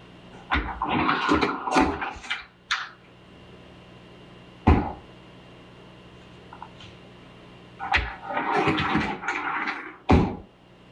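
White bifold closet doors being pulled open, rattling and scraping in two bursts, one near the start and one near the end, with a single sharp knock about halfway through.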